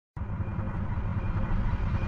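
A deep rumbling sound effect cuts in abruptly just after the start and slowly swells in loudness: the build-up of an intro sting.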